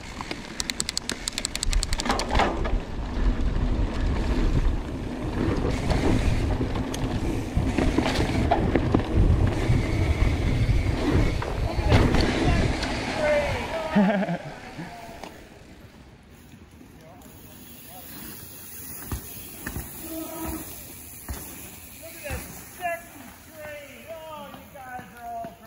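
Mountain bike ridden fast down a dirt trail, heard from a handlebar-mounted camera: wind rushing over the microphone, tyres on dirt and the bike's frame and chain rattling, with sharp knocks over bumps. It drops away about fourteen seconds in, leaving a much quieter stretch with faint short sounds.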